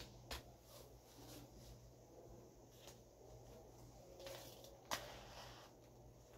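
Faint knocks, clicks and rustling as a prop rifle is handled and fitted onto the back of a suit of cosplay armor. There is a sharp click just after the start and a louder knock about five seconds in, over a low steady room hum.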